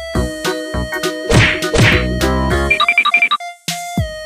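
Electronic background music with a string of sharp percussive hits, two noisy crash-like bursts about a second and a half in, and a quick run of high blips near the three-second mark.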